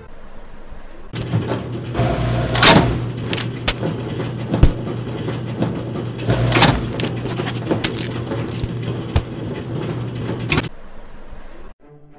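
A steady low mechanical hum with continual clattering and knocks. There are two louder bangs, about three seconds in and again near seven seconds, and the machine noise cuts off about a second before the end.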